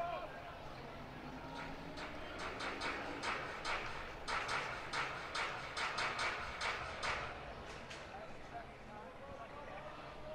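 Ballpark crowd clapping in unison, about three claps a second, over a steady crowd murmur. The clapping starts about two seconds in and fades out after about seven seconds.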